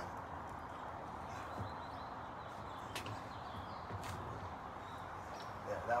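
Faint steady outdoor background with a few light, isolated taps and clicks.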